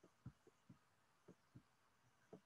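Faint, irregular taps of typing on a computer keyboard, about six keystrokes in two seconds.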